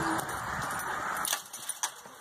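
Chain-link fence rattling as a large dog climbs up onto it, with a few sharp metallic clinks near the end.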